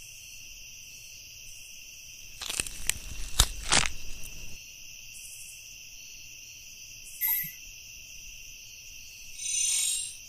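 Night ambience of crickets chirring steadily. About two and a half seconds in comes a cluster of loud thumps and crunches lasting about two seconds, then a short burst near seven seconds and another near the end.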